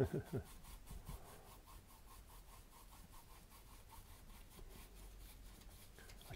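Faint, steady rubbing of a paintbrush working acrylic paint across a canvas.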